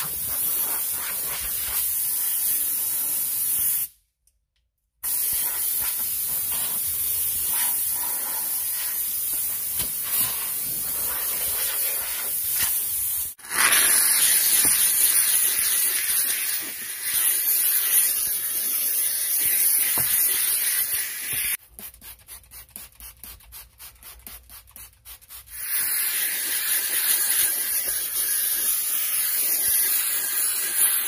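McCulloch 1385 steam cleaner's nozzle hissing steam onto a truck's floor, with a towel rubbing in the first part. The sound cuts out for about a second four seconds in and gets louder about halfway through. For a few seconds after that it drops quieter and comes in rapid pulses, about five a second, before the steady hiss returns.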